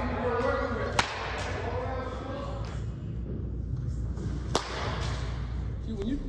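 Baseball bat striking a ball in a batting cage: two sharp cracks, the first about a second in and the second about three and a half seconds later.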